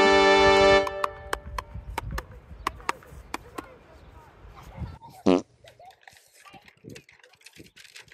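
A brass fanfare with trumpet-like held notes cuts off within the first second. Low rumbling outdoor noise with scattered clicks follows, and about five seconds in a short, loud sound falls sharply in pitch.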